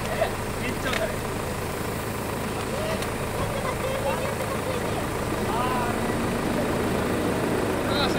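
Spark fountain fireworks hissing steadily as they spray sparks, over a low steady hum, with faint voices now and then.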